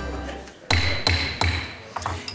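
Intro music fading out, then three sharp knocks about a third of a second apart, with a thin ringing tone under the first one.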